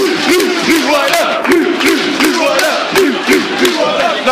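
Football supporters in the stand chanting and shouting together, many men's voices close to the microphone, with frequent sharp knocks mixed in.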